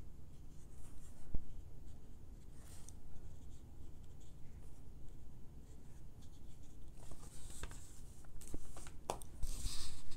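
Small watercolour brush rubbing lightly over cold-press watercolour paper, a faint scratchy brushing. Near the end, a few clicks and scrapes as the painting board is shifted on the table.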